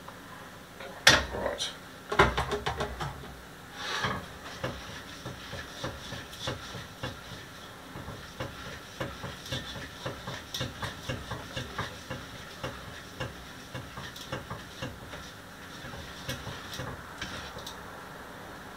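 A utensil stirring ganache in a metal mixing bowl over a bain-marie: a few sharp knocks against the bowl about a second and two seconds in, then light, irregular clinks and scrapes of the utensil on the metal.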